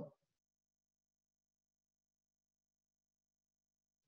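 Near silence: the last word of speech dies away at the very start, then only faint steady electronic background tone.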